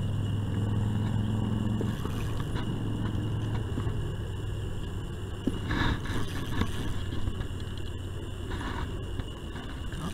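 A steady low engine hum, strongest for the first two seconds and then fainter, with a thin steady high whine throughout.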